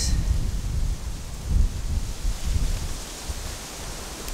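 Low, uneven rumble of wind buffeting the microphone, with a stronger gust about one and a half seconds in.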